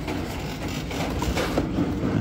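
Boxed toy figures being handled on store peg hooks: cardboard and plastic packaging rustling and knocking as the boxes are moved, over a steady background noise.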